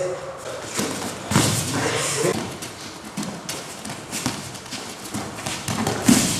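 Irregular quick knocks, thuds and scuffs of barefoot partners sparring on mats in a large hall, with voices in the background.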